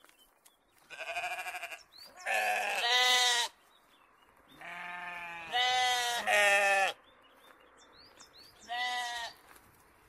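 Sheep bleating: about six wavering bleats in three bunches, some overlapping as from more than one sheep, with short quiet gaps between.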